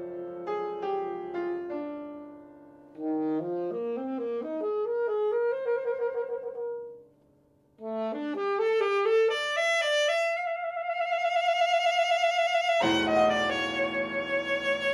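Saxophone and grand piano playing live: fast runs of notes broken by two brief pauses, then a long held note with vibrato. A fuller, louder passage with low piano notes enters near the end.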